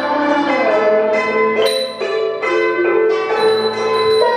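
Cambodian traditional ensemble music: roneat xylophones and a khim hammered dulcimer play struck notes that ring on, with a sliding held tone under them in the first second.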